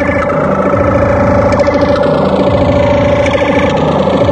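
Loud tekno music from a free-party sound system: a sustained buzzing synth drone over a dense, rapid beat, with a falling sweep near the middle.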